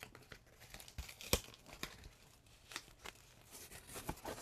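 Packing tape and the cardboard flap of a cardboard mailer being torn and pulled open by hand: a string of short rips and crackles, the sharpest about a second and a half in.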